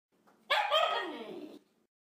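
A dog's call: a sharp note about half a second in, then a second, drawn-out note that falls steadily in pitch and cuts off after about a second.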